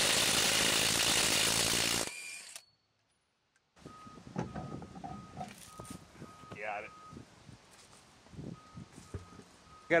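Cordless DeWalt DCF850 impact driver hammering on a truck lug nut to break it loose, a loud steady rattle for about two seconds that then stops. Faint handling noises follow as the wheel comes off.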